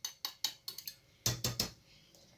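Light clicks and taps of a kitchen container being handled over a saucepan, after cornstarch has been poured into milk. About halfway through come two or three duller knocks.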